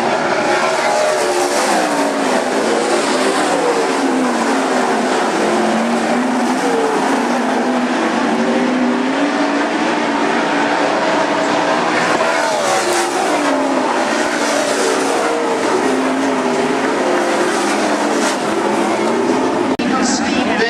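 410 sprint car V8 engines racing on a dirt oval, loud and continuous, the engine note rising and falling again and again as the cars lift and accelerate.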